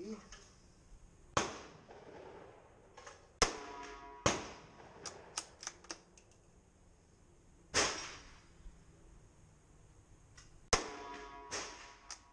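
Rifle shots on a shooting range: five sharp reports at uneven gaps, the loudest about three and a half seconds in, each with a short echoing tail, with quicker, lighter clicks in between.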